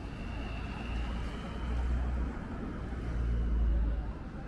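City street traffic: passing cars with a low rumble that swells about two seconds in and again near the end.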